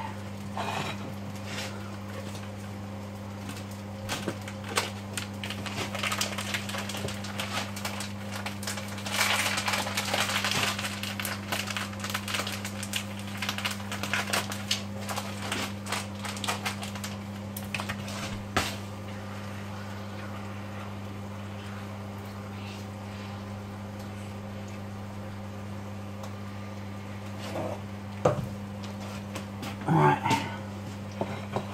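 Kitchen clatter of utensils, plates and pans being handled during food preparation: many short clicks and knocks for the first twenty seconds or so, then only a few near the end, over a steady low hum.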